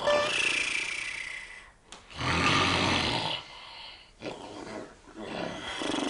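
A man snoring loudly in his sleep: two long, loud snores about two seconds apart, then quieter snoring.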